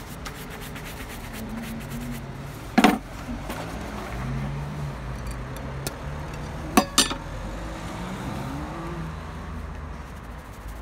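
Hand rubbing and buffing polish into a black leather shoe over steady background street noise, with one sharp click about three seconds in and a quick pair of clicks about seven seconds in.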